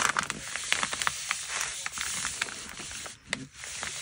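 Hands rubbing and pressing glued patterned paper flat onto a kraft paper mailer: paper rustling with scattered small clicks and ticks.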